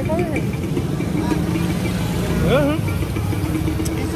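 Steady low rumble of an idling engine in street noise, with voices speaking briefly over it near the start and again about two and a half seconds in.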